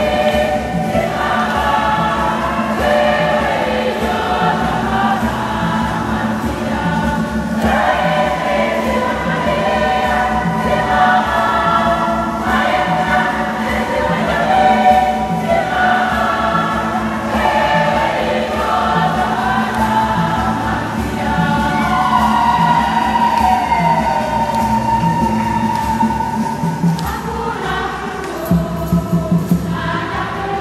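Women's church choir singing a lively Swahili hymn together, with keyboard accompaniment and a steady repeating beat underneath.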